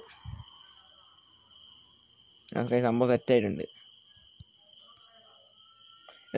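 A man's voice speaking briefly, about halfway through, over a faint steady high-pitched tone in the background.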